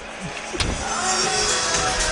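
Stadium background with music playing over a broad crowd hubbub during the half-time break, picked up by the commentary microphones; a few steady held notes come in about a second in.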